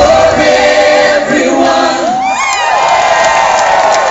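A live rock song coming to an end: the drums and bass drop out at the start, leaving held singing voices over a cheering concert crowd, with whoops about halfway through.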